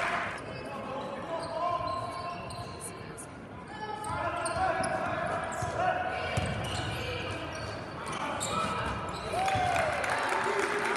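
Live game sound of a high school basketball game in a gym: the ball bouncing on the hardwood, sneakers squeaking in short chirps, and voices of players and spectators echoing in the hall.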